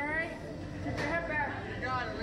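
Speech only: a female voice talking in two short phrases, one at the start and one about a second in.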